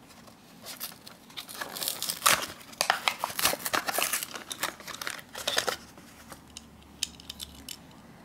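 Hot Wheels blister packaging being torn open by hand: the card tearing and the plastic blister crinkling and crackling in irregular bursts as the die-cast car is worked free, dying away about six seconds in.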